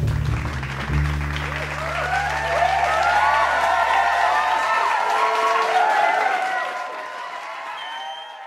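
A jazz trio's final chord on piano and double bass, struck about a second in and left to ring and fade, while applause with cheers and whoops rises over it and then dies away near the end.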